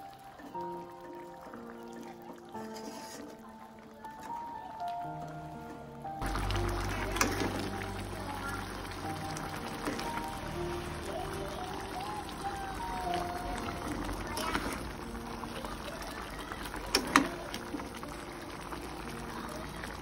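Background music alone for about the first six seconds. Then simmering broth in a wok stirred with a metal spatula takes over, with a low hum underneath and sharp clicks of the spatula against the pan, loudest near the end, while the music carries on quietly.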